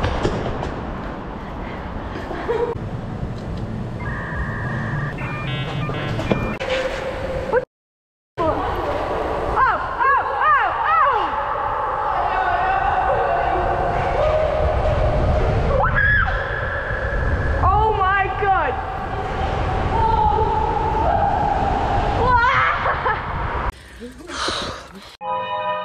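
Bicycle riding down the curved concrete ramps of a multi-storey car park: a steady rolling and wind rumble that echoes off the walls. Several short, high-pitched squeals rise and fall over it, about four times in the second half.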